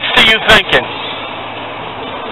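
A man's voice speaking for under a second, then steady, even outdoor background noise with no distinct events.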